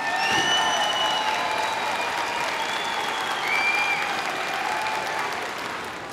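A large audience applauding: the clapping swells quickly at the start and eases off gradually toward the end.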